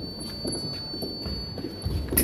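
Fencers' footwork on a piste over a wooden floor: quick irregular stamps and shuffles, heaviest in the second half. A thin steady high tone sounds throughout.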